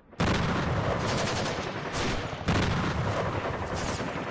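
Dense, rapid gunfire with machine-gun bursts, starting suddenly and continuing without a break, with a fresh surge about two and a half seconds in.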